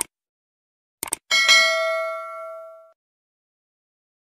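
Subscribe-button animation sound effect: a mouse click, then a quick double click about a second in, followed by a bright notification-bell ding that rings out and fades over about a second and a half.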